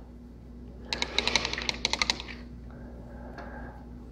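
A quick rattling run of about a dozen light clicks over a little more than a second, then a faint short hiss.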